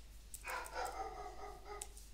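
A dog vocalising in the background: one drawn-out pitched call lasting over a second, with a few computer keyboard clicks.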